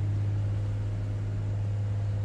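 A steady low hum with a faint hiss over it.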